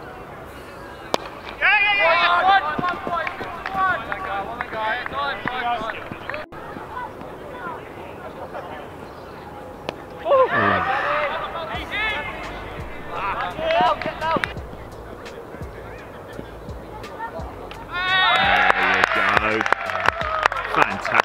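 Cricketers shouting on the field: several separate loud calls, one long shout that falls in pitch about ten seconds in, and a louder burst of shouting with sharp claps near the end.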